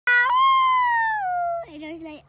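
A long, high-pitched vocal 'wheee', jumping up in pitch at the start and then sliding slowly down for about a second and a half. Short speech follows near the end.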